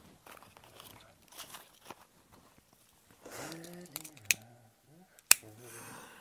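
Quiet handling and rustling sounds with a short low murmur of a voice a little past halfway, then two sharp clicks about a second apart, the second the loudest.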